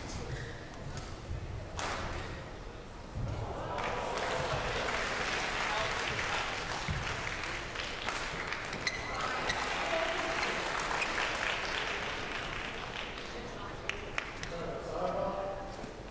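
Arena audience applauding. The clapping swells sharply about three seconds in, holds for several seconds, and then dies away, with some crowd voices near the end.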